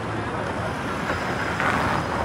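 City street traffic noise, swelling in the second half as a vehicle passes close by.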